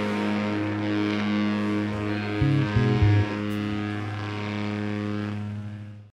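Electric guitar laid against a Marshall amplifier, ringing on in a steady sustained feedback drone at the end of a rock song. A few short low notes sound about halfway through, and the sound drops away at the very end.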